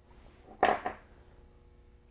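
A single brief rasp of PTFE thread-seal tape being pulled and handled while it is wrapped onto a small brass pipe fitting, about half a second in; otherwise quiet room tone.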